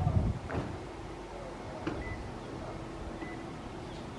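Steady outdoor background noise with a faint low hum running through it. A short rising sound comes about half a second in, then two brief high chirps near the middle.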